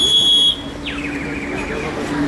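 A single high, steady electronic beep lasting about half a second, the loudest sound here, followed by a fainter high sound that drops sharply in pitch and then trails off slowly downward.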